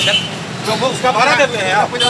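A man's voice speaking unclear words over street background noise.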